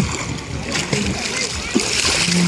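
Water splashing as a child swims and kicks in shallow sea water, the splashing growing louder near the end, with faint voices in the background.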